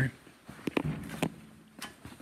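Footsteps on a concrete garage floor: a few light, irregular taps and scuffs about half a second apart as the person holding the camera walks.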